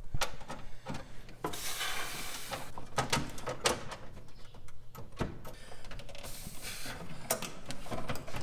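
Hands handling a Vintage Air heater unit and its wiring under a truck's dash: irregular small clicks and knocks, with two spells of rustling, scraping handling noise.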